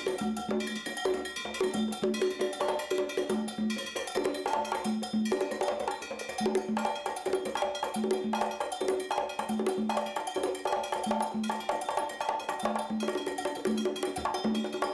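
Congas played by hand in a steady, fast Cuban rhythm, with repeating pitched drum tones and sharper clicking percussion strokes over them.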